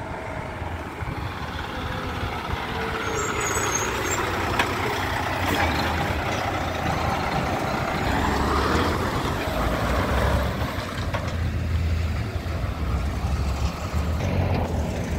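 Diesel log truck, running empty, driving past close by: the engine and tyre noise grow as it approaches and are loudest as it passes about eight to ten seconds in, the pitch dropping as it goes by. A pickup follows close behind near the end.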